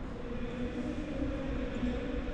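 Large wall-mounted electric fans running, a steady low drone with a humming tone.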